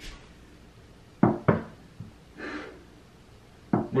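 A few short, sharp knocks on a hard surface: two quick ones a little over a second in, a lighter one just after, and another near the end, with a soft breath between.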